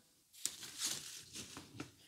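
Fabric rustling and crinkling, with a few small clicks, as a fabric egg crate grid is handled and fitted over half of an LED light's front.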